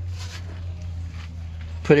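A steady low hum with no change in pitch, and light rustling of handling in the first half second.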